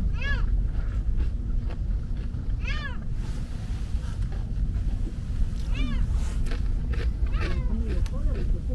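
Seagulls calling: three separate short cries a few seconds apart, each rising and then falling in pitch, with a fainter call near the end. Under them runs a steady low rumble.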